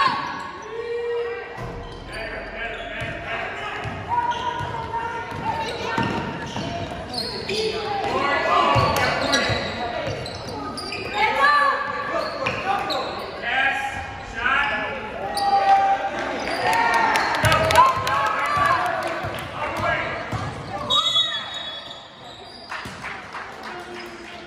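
A basketball bouncing on a hardwood gym floor during play, with indistinct shouting from players and spectators.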